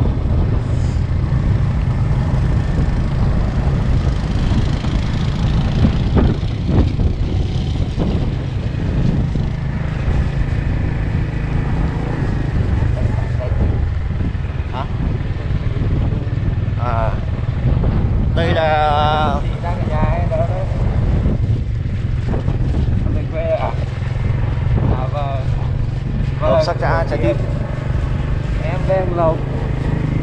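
Motorcycle engine running steadily in low gear along a rough uphill dirt track, a continuous low drone.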